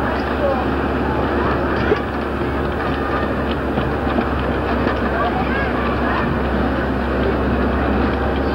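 Indistinct voices of roadside spectators as a pack of runners passes, over a steady rumbling noise and low hum.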